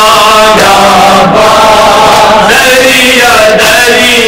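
Male voices chanting a noha, a Shia Muharram lament, together into a microphone. The voices are loud and held on long sung notes that glide slowly in pitch.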